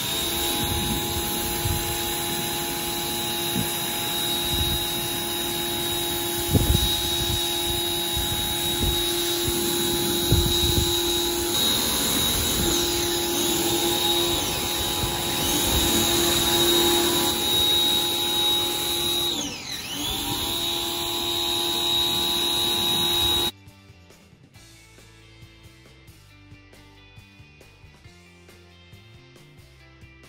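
Pressure washer running under load, a steady motor-and-pump hum with the hiss of the water jet. Its pitch and level dip briefly about two-thirds of the way through, then recover. The sound cuts off suddenly a few seconds before the end.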